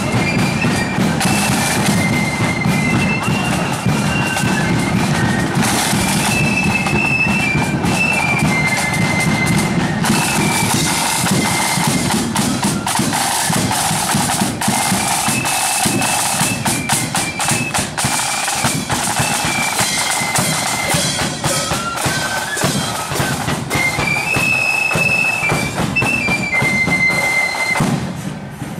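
Marching flute band playing a tune on the march: high flutes carry the melody over rapid snare drum rolls and a steady bass drum beat.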